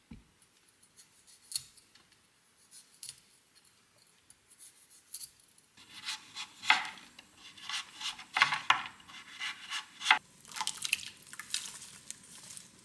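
A chef's knife slicing through a raw broccoli stem on a cutting board, with crisp, crunchy cuts in an irregular run. The cuts start about halfway through, after a few faint taps and rustles of the broccoli being handled.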